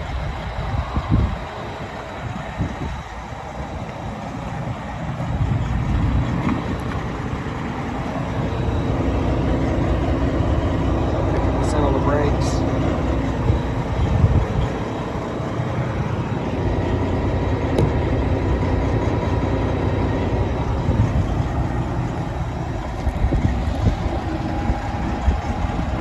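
Detroit Diesel Series 60 12.7-litre truck engine idling steadily, a continuous low rumble heard from behind the cab.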